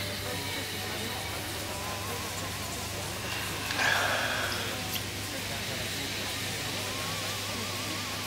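A person sniffing red wine in a glass: one long, noisy inhale about four seconds in, over a steady low hum.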